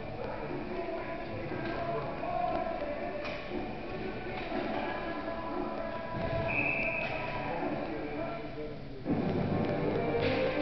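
Indoor ice-rink ambience during a stoppage in play: indistinct voices over music, with a brief high steady tone about six and a half seconds in and a sudden rise in loudness near the end.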